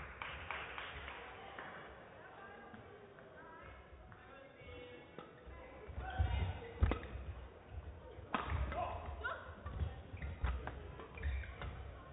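Badminton rally: sharp racket hits on the shuttlecock, most frequent from about six seconds in, with players' footfalls and thuds on the court floor.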